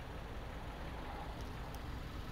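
Steady, low outdoor background noise: a faint rumble and hiss with no distinct events.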